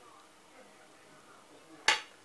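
A metal spoon spreading mayonnaise over flatbread, faint and soft, then one sharp clink of the spoon near the end.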